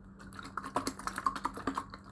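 Thin plastic bottle crinkling and clicking as it is gripped and handled close to the microphone: a quick, irregular run of sharp crackles starting a moment in.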